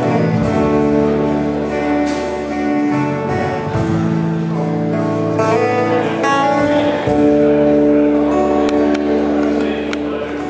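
Live folk band playing a slow waltz: acoustic guitars and bass guitar, with a woman singing into the microphone.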